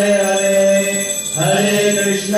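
Devotional chanting: a voice holding long sung notes over a steady low drone, moving to a new note about one and a half seconds in.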